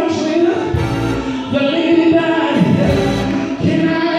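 Gospel singing: a man's voice sung through a handheld microphone and the church sound system, with other voices joining in.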